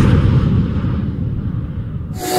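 Deep rumbling boom from an intro sound effect, slowly dying away.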